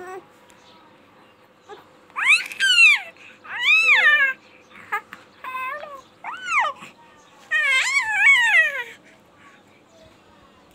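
A baby making a run of high-pitched squeals, each one rising and then falling in pitch, in several bursts from about two seconds in until near the end.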